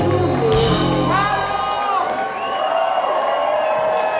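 Live funk band playing with bass and drums, then the low end stops about two seconds in and a held note rings on. High vocal whoops sound over the band.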